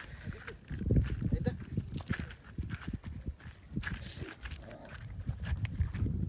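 Gusty wind buffeting the microphone, an uneven low rumble that sets in about a second in and keeps going.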